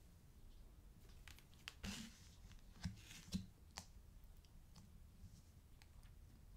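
Faint handling of tarot cards: a scatter of soft clicks and taps as cards are held up, drawn from the deck and laid on the table, mostly between about one and four seconds in, over quiet room tone.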